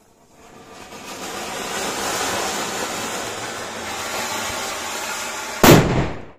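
Anar bomb firework, a ground fountain that ends in a blast: a hissing, crackling spray of sparks builds up and runs steadily for about five seconds, then a single loud bang goes off near the end.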